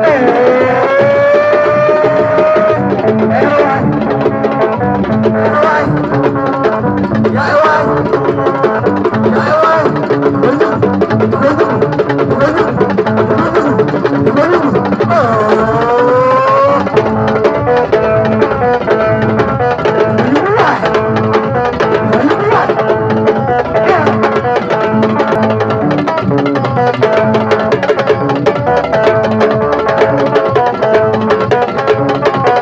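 Live mbilim music played loud through a sound system: steady drumming under a repeating pattern of held instrument notes. A man's sung line slides through the first few seconds and again about halfway through.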